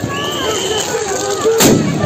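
A single loud bang about one and a half seconds in, sharp and briefly ringing, over a background of voices.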